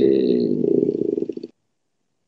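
A man's long drawn-out hesitation sound, 'eee', held at a steady pitch for about a second and a half, turning rough and creaky before it stops.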